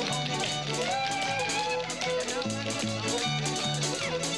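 Country square-dance band music: guitar over a bass line that steps back and forth between two notes.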